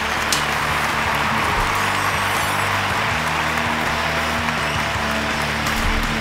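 Applause over background music with a steady bass line, with one sharp hand slap from a high five just after the start.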